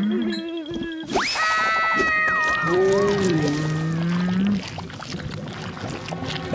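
Cartoon music and sound effects: a quick rising swoop about a second in, then held high notes with a wavering tone, over a low drawn-out moan.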